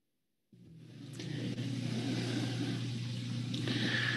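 An audio feed cutting in from dead silence about half a second in: a steady low electrical hum with hiss, the background noise of an open microphone just before someone speaks.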